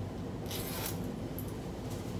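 A short rasp, about half a second in, as a jacket is unfastened at the front, over a steady low room hum.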